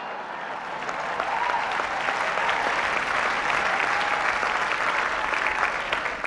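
Audience applauding, swelling over the first second or so and easing off near the end.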